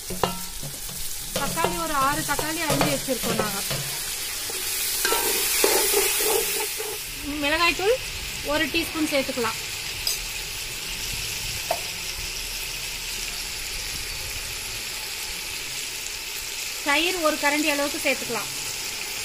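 Chopped tomatoes and onions frying in oil in an aluminium pot: a steady sizzle that swells loudest about five to seven seconds in.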